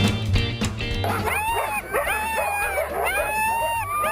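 Music for about the first second, then several sled dogs howling and yipping together, long calls that rise and then hold, one after another.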